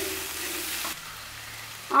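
Potato and raw banana pieces sizzling in oil in a nonstick frying pan, stirred with a wooden spatula while freshly added spice pastes and ground spices fry with them. The sizzle drops suddenly to a quieter hiss about halfway through.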